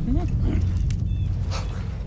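An ape calls out with short hoots that rise and fall in pitch in the first half-second, over a steady low rumble. A few sharp clicks follow later.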